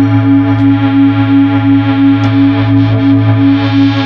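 Music: a sustained synthesizer drone holding one low chord that wavers slightly in level, with no drums or vocals.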